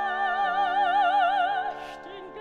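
Operatic soprano holding a high note with wide, even vibrato over sustained orchestral chords, breaking off near the end into a brief sung consonant hiss.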